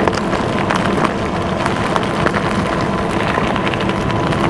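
Lectric XP Lite e-bike riding over a gravel desert track: a steady crunch and rattle of the tyres and frame over small stones, dotted with many quick clicks.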